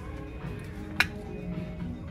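Background music, with one sharp plastic click about a second in: the flip-top cap of a shampoo bottle snapping open.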